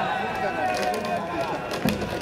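Voices calling from the stands at a baseball game, some held notes, with a single sharp knock just before the end.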